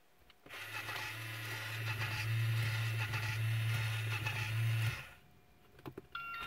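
Toy ice cream truck's battery-powered windshield wiper motor running with a steady hum and rattle, starting about half a second in and stopping just before five seconds. A button click comes near the end.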